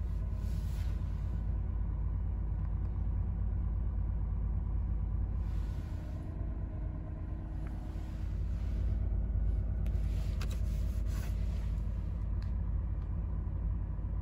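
Cabin of a 2019 Acura NSX sitting in park with the car on, a steady low idle rumble. A couple of faint clicks about ten and eleven seconds in.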